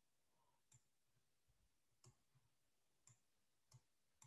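Near silence, broken by about four very faint, short clicks spread across a few seconds.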